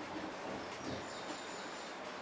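Steady background noise with a few faint indistinct sounds, and a thin high tone lasting just under a second from about a second in.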